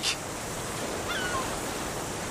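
Steady outdoor background noise, a breeze on the microphone, with a faint short chirp about a second in.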